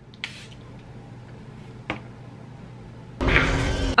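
Mini pump bottle of Charlotte Tilbury Airbrush Flawless setting spray misting onto a face: a faint hiss just after the start, a click nearly two seconds in, and a loud spray burst near the end that is 'a little bit aggressive'.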